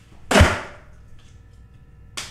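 A small thrown object lands with a single sharp swish and thud about half a second in, dying away quickly. A faint steady hum follows.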